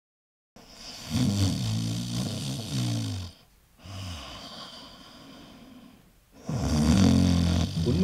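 A person snoring: two loud, low, rattling snores about six seconds apart, with a quieter breath between them.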